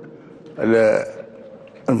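A man's voice: one short drawn-out vocal sound about half a second in, then a brief pause before his speech resumes near the end.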